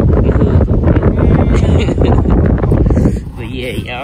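Wind buffeting the phone's microphone, a loud, low rumble that eases off about three seconds in, when a voice is briefly heard.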